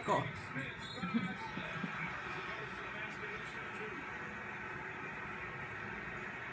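A television playing in the background, with faint speech and music.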